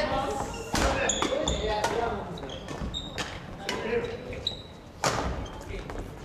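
Badminton rally: rackets striking the shuttlecock in sharp hits a second or two apart, with short squeaks of shoes on the wooden floor, echoing in a large gym hall.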